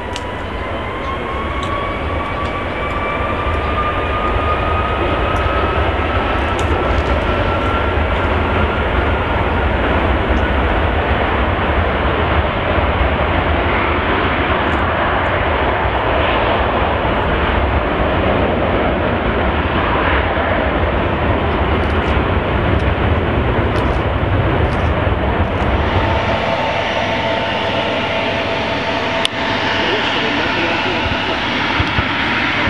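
An Air China Airbus A330's twin jet engines spool up on the runway: a rising whine over a loud, deep rumble that then holds steady. Near the end the deep rumble drops away, leaving the steady whine of an Embraer regional jet taxiing.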